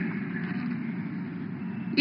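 Low, steady background rumble without speech, in a gap between spoken sentences.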